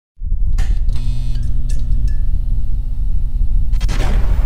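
Cinematic logo-intro music and sound effects: a deep rumbling drone with a held low tone, several sharp hits in the first two seconds, and a swelling burst near the end.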